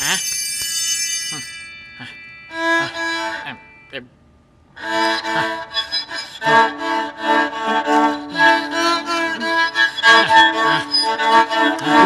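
A glittering magic-sparkle chime effect rings for about two seconds. Then a violin is bowed: a short phrase, a brief pause, and from about five seconds in a long, loud stretch of playing. The playing is bewitched and sounds bad enough that a listener afterwards guesses the violin is out of tune.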